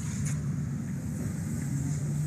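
A steady low mechanical hum and rumble, like a motor or engine running, with a steady low tone that grows stronger about halfway through.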